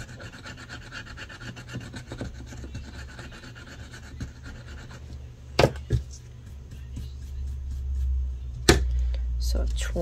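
A thin metal tool rubbing the scratch-off coating on a paper savings challenge card: a soft, steady scratching. About halfway through, two sharp clicks as the tool is put down on the wooden table, and another sharp click near the end.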